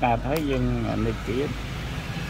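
A man's voice speaking in short phrases over a steady low background hum; the speech stops about a second and a half in.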